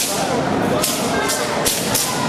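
Wushu broadsword swung fast through the air: a few short, sharp swishes and snaps of the thin blade, over a constant murmur of crowd chatter.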